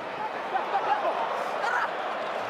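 Stadium crowd noise: many voices shouting and calling at once in a steady din.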